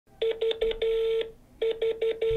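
Call-progress beeps from a smartphone on speaker while an outgoing call tries to connect: three short beeps and a longer one, a short pause, then the short beeps start again.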